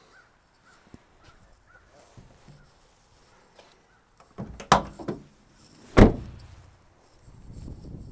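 Rear barn door of a 2019 Nissan NV200 cargo van being handled and shut: faint clicks and rattles at first, then a couple of metal clunks about halfway through and a heavy door bang about a second later, the loudest sound.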